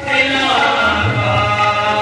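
Devotional chanting sung by male voices over steady musical accompaniment, in the manner of Sikh kirtan.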